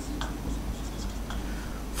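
Marker pen writing on a whiteboard: a few short strokes of the tip across the board.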